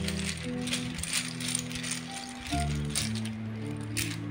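Small alphabet letter pieces rattling and clicking against each other as they are shaken in a cloth drawstring bag, over soft background music.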